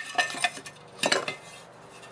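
Metal clinking and scraping as the muffler is pulled off a Husqvarna K760 cut-off saw's cylinder, with a sharper clink about a second in.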